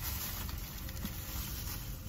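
Low steady rumble of a car's cabin, with a few faint clicks and rustles of movement.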